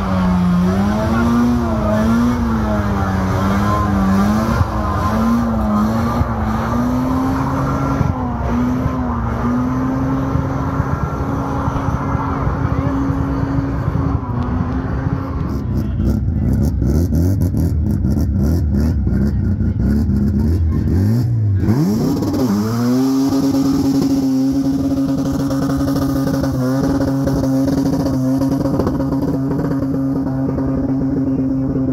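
Mazda rotary engine held at high revs during a tyre-smoking burnout, the pitch bouncing up and down. Past the halfway point the revs fall to a rough, crackling low speed, then about three-quarters in they climb again and hold steady and high for another burnout.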